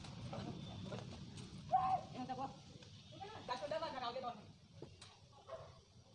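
Boys' voices calling out during outdoor play: two short shouts, one about two seconds in and a longer, wavering one around the middle, over a low rumble that fades after the first second or so.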